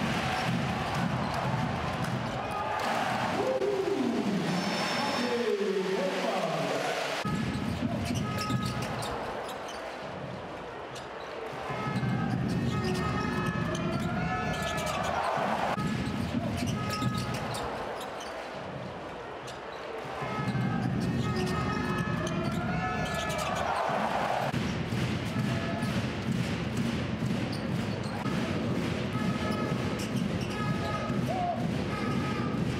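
Live basketball game sound in an arena: crowd noise with the ball bouncing on the court. The sound dips briefly twice as the reel cuts between plays.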